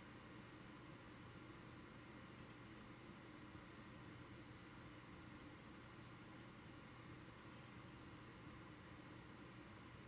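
Near silence: a faint, steady hiss and hum of microphone room tone.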